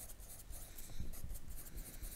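Pencil writing on lined notebook paper: a run of short, faint scratching strokes as numbers are written.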